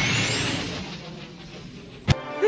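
Cartoon sound effect of a jet flying past: a rushing noise that fades away, with a high whine that rises and then holds steady.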